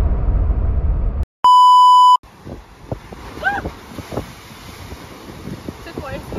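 A loud, steady electronic bleep about three-quarters of a second long, an edited-in tone of the kind used to censor a word. It comes just after heavy wind rumble on the microphone stops dead, and it gives way to faint wind.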